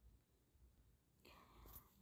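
Near silence with a low hum; a little over a second in, a faint breathy hiss starts and runs until the speech begins.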